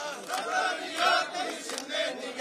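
A crowd of men chanting a Marathi protest slogan in unison, clapping along.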